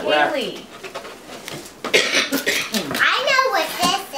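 A young child's high-pitched voice and adult speech, with a short rustle of gift wrapping paper and packaging about two seconds in.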